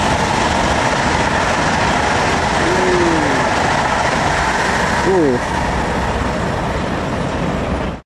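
Jakarta–Bandung high-speed electric multiple-unit train passing close by on an elevated track at about 200 km/h: a loud, steady rushing noise.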